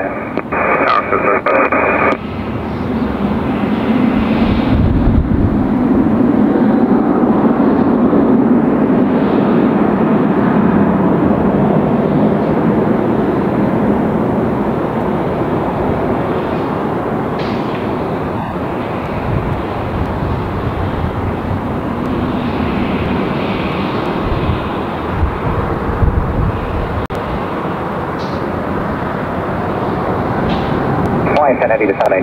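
Twin jet engines of a Boeing 777 airliner running at high power, a loud steady rushing sound that builds up about three seconds in and holds, typical of an airliner spooling up and starting its takeoff roll. Over the first two seconds an air traffic control radio call sounds.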